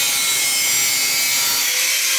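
Angle grinder with a cut-off disc running steadily and cutting into a stainless steel pipe, a continuous grinding noise with a faint whine.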